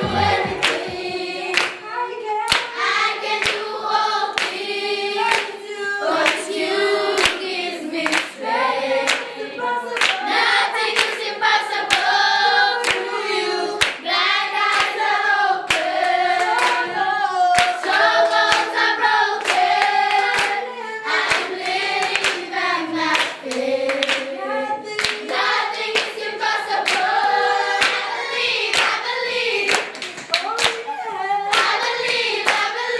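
A group of schoolchildren singing together, keeping time with steady hand claps.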